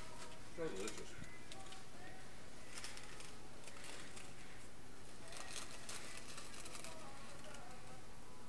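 Paper nugget bags crinkling and rustling three times as hands dig into them, over a low background murmur of voices.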